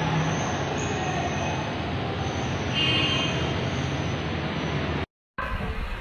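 Wall-mounted oscillating electric fan running with a steady, noisy whir; it cuts off suddenly about five seconds in.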